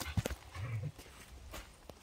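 A few sharp knocks and scuffs as Jindo dogs move through a gateway on packed dirt, a cluster at the start and two more near the end. A short low, voice-like sound comes just after half a second in.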